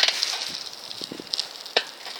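Riding noise from a bicycle on the move, picked up by a hand-held phone: a rustling hiss with scattered small rattles, and a sharp click at the start and another near the end.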